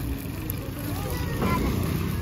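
Voices talking in the background over a steady low rumble.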